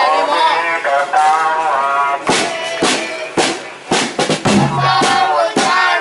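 Voices singing, joined about two seconds in by a large drum beaten in an uneven rhythm, with deep booming hits in the second half.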